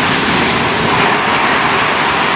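A multi-storey reinforced-concrete building collapsing during demolition: a loud, continuous rumble of falling concrete and rubble, steady throughout.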